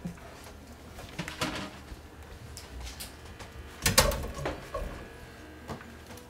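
Drained cauliflower florets being tipped from a colander into a cooking pot in a kitchen sink: scattered knocks and scraping, with the loudest clatter about four seconds in.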